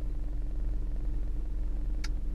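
Steady low hum of a car's engine idling, heard from inside the cabin of the stopped car.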